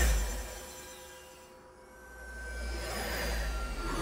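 Background cartoon music dies away over the first two seconds. Then a low, swelling whoosh of a cartoon glider flying past builds toward the end, with faint held tones under it.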